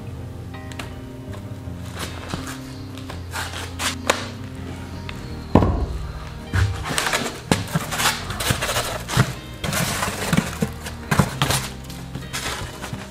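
Background music with a single loud thump a little past halfway, followed by a run of irregular knocks and scrapes as a rigid foam-board lid is handled and pressed onto a foam-board box.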